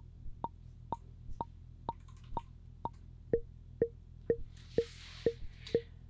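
Intellijel Plonk physical-modelling percussion module triggered about twice a second, short plucked notes. The pitch jumps up about an octave near the start and back down about three seconds in, stepping straight between notes with no glide because the Teletype's output slew is set to zero.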